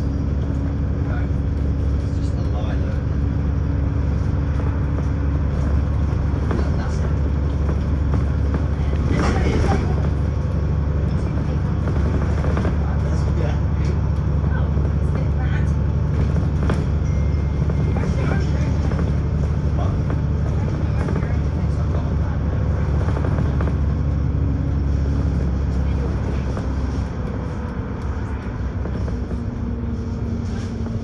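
Inside a VDL DB300 double-decker bus on the move: a steady low engine drone with road and body noise and the odd knock. It gets a little quieter for the last few seconds.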